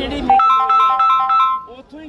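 Mobile phone ringtone: a quick repeating figure of three high electronic notes. It starts about a third of a second in and cuts off after a little over a second.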